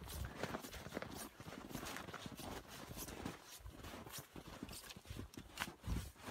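Footsteps crunching through snow, about two steps a second.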